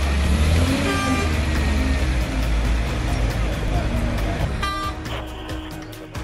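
Street crowd and traffic noise with a heavy low rumble; a car horn sounds briefly about a second in and again near five seconds.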